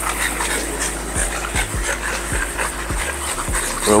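French bulldogs panting.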